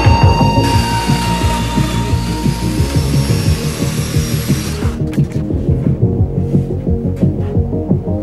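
Background music with a steady beat. Over it, a Festool Domino joiner's motor runs and plunge-cuts a mortise from just under a second in until about five seconds in, then stops.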